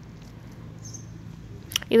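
Faint steady low hum and hiss of background noise in a pause in the talk, with a voice starting just before the end.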